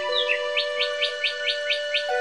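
Meditation music of held, steady tones with a bird call laid over it: a short falling note, then a run of about seven quick rising chirps, some five a second.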